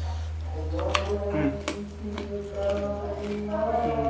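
Background music with long held notes that build toward the end, over a steady low hum. A few short sharp clicks of eating and lip smacks come about a second in and again shortly after.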